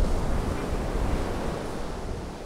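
Wind and churning sea water, like a boat's wake, with a deep rumble underneath, slowly fading out.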